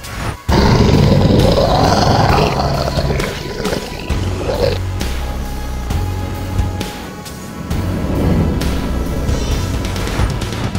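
Dramatic film-score music with a loud creature roar sound effect that bursts in about half a second in and dies away over the next few seconds.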